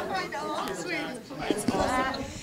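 Low, overlapping chatter of several people talking off-microphone.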